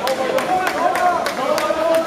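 Several spectators' voices shouting and calling out over one another in a sports hall, with scattered sharp claps or knocks in between.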